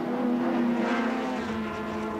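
Touring car racing engines at speed, a steady engine note whose pitch drops slightly about a second and a half in.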